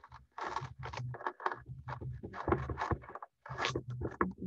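Paper towel dabbed and rubbed against wet watercolor paper to lift paint into patterns: a series of about five short rubbing strokes.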